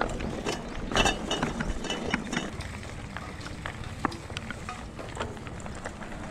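Mountain bike ridden over a rough dirt and gravel track: dense irregular clicking and rattling from the bike over the bumps, with the rear hub's freehub ratcheting as it coasts, and a louder clatter about a second in.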